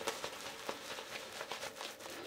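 Silvertip badger shaving brush working shaving-soap lather over a stubbled face: faint, irregular crackling and squishing of bristles and foam.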